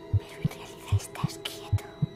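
Suspense trailer sound design: a slow heartbeat-like double thump, about 75 beats a minute, over a sustained low drone, with whispering voices.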